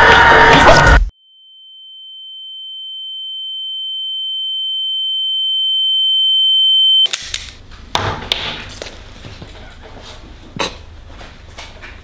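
A single pure, high-pitched electronic ringing tone, a film sound effect over a black screen, swelling steadily louder for about six seconds and then cut off abruptly. Before it, in the first second, a loud noisy passage breaks off suddenly. After the tone, faint clicks and knocks sound in a quiet room.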